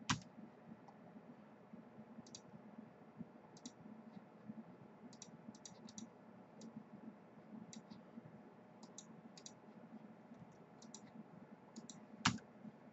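Faint computer mouse clicks, scattered single and double clicks every second or so, with a louder click right at the start, over a faint low hum.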